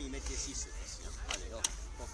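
Two sharp, light clicks about a second and a half in, wooden knocks from arrows being loaded into the magazine of a reconstructed Roman polybolos, over a low steady rumble and faint voices.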